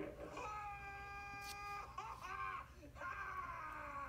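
A high, drawn-out wailing voice, held on one pitch for over a second, then a few short wavering cries and a long falling wail near the end.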